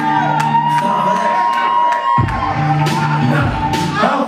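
Hip hop beat played loud through a club PA at a live rap show, with shouted vocals over it. The bass drops out and comes back in about two seconds in, under a sustained high synth tone and steady hi-hat ticks.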